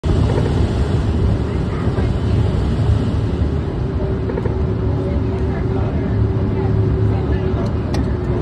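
Steady cockpit noise of an aircraft on final approach: a dense low rumble of airflow and engines, with a thin steady hum joining about four seconds in.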